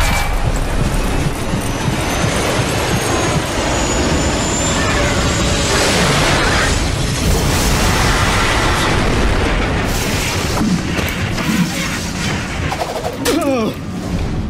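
Explosion sound effect: a booming blast, then a long, dense rumble of fire, mixed with dramatic music.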